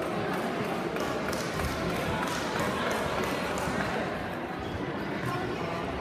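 Indistinct chatter of many people echoing in a large hall, with a few scattered light thumps.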